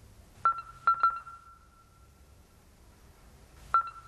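Electronic ding sound effect: three quick dings, all on the same high note, about half a second in, each ringing briefly and fading, then one more ding near the end, marking words popping onto a caption card one at a time.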